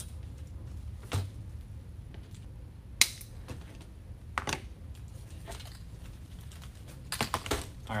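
Zip ties being fastened around a wire wreath frame: scattered sharp plastic clicks, the loudest about three seconds in, and a quick run of clicks near the end, over a low steady hum.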